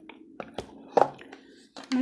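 Hands handling small cardboard product boxes, with a few light taps and knocks about half a second in and again at about a second.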